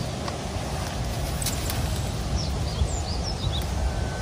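Outdoor background: a steady low rumble, with a few faint, short high bird chirps about two and a half to three and a half seconds in.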